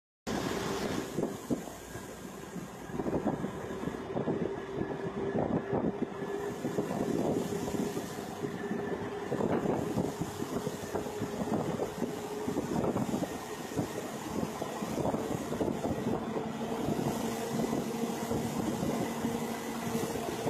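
A vehicle engine running steadily with a continuous rushing noise over it; the hum's pitch shifts up a little near the end.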